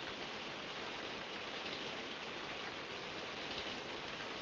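A steady, even hiss with no distinct sounds in it.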